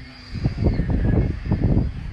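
Wind buffeting the microphone in loud, irregular low rumbles, starting about half a second in.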